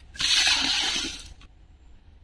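Hard plastic scraping from a blue openwork plastic basket, a rough hiss that starts just after the beginning and lasts about a second.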